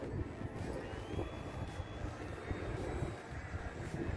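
Electric ducted-fan motor of an RC jet, the Habu STS, whining faintly as it flies by at a distance. The thin whine rises about half a second in and then holds steady, under louder wind rumble on the microphone.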